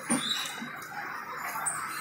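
Passenger coaches of an arriving express train rolling slowly past with a steady rumble, a knock just after the start and a few short high squeaks from the running gear as it slows.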